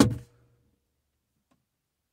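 The end of a man's spoken word in the first moment, then near silence with nothing else heard.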